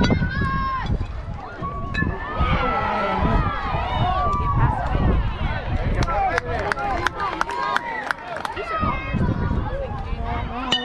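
Spectators and players at a youth baseball game shouting and cheering together as a ball is put in play, with many short sharp clicks in the second half.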